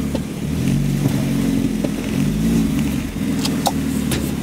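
A car engine heard from inside the cabin, running at low speed with a steady low hum that wavers slightly in pitch as the car rolls forward. A couple of light clicks come about three and a half seconds in.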